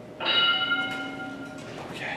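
A bell from a workout interval timer, struck once about a quarter second in and ringing out over about a second and a half, marking the end of an exercise interval.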